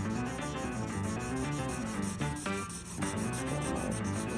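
Felt-tip marker scribbling back and forth on paper, colouring in: a quick, even run of scratchy strokes. Background music plays under it.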